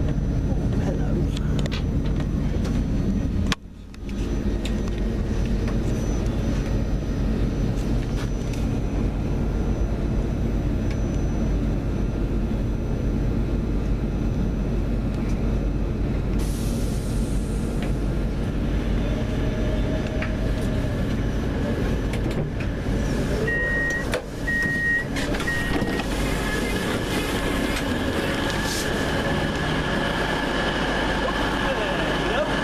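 Steady low rumble of a passenger train running, heard from inside the carriage. Near the end, three short high beeps sound in quick succession.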